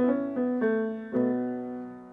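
Piano playing a short run of chords between sung lines, four struck within about the first second, each ringing and fading.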